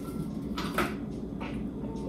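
A small glass jar being handled at a table: two short scrapes, about half a second in and again about a second later.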